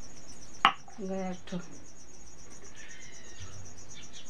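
A single sharp knock about half a second in as a hand-held stone strikes a hard hog plum (amda) on a wooden grinding board, trying to crack the unripe fruit. A steady, evenly pulsing high insect chirping runs underneath.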